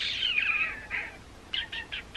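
A high-pitched, whistle-like sound from pursed lips, gliding down in pitch for most of a second. A few short high chirps follow near the end.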